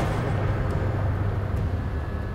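A steady low rumble with no events in it, the kind of ambient bed laid under a landscape shot.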